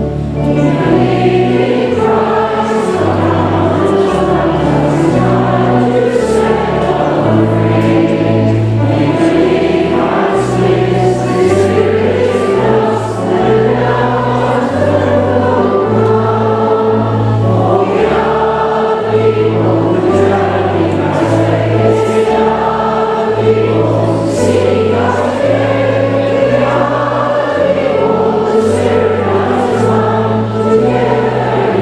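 Church congregation singing a song together with instrumental accompaniment, a steady bass line stepping from note to note under the voices.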